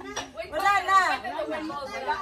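Only speech: several people chattering at once, words indistinct.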